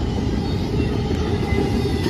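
Double-stack intermodal freight cars rolling past on the rails, a steady low rumble of wheels on track.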